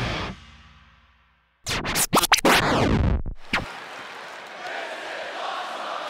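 A loud rock intro sting fades out and briefly goes quiet. It is followed by about two seconds of several record-scratch and swoosh sound effects for the title graphic, then a steady hum of arena crowd noise.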